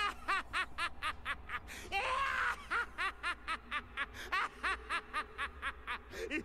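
Majin Buu's cartoon voice laughing in a long, rapid, even string of high-pitched giggles, about four a second. About two seconds in, a louder rushing sound briefly interrupts it.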